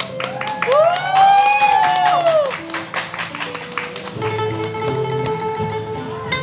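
Acoustic guitar and a plucked lute playing an improvised tune together. About a second in, a tone glides up and back down for over a second; from about four seconds in, held notes sound over the strings.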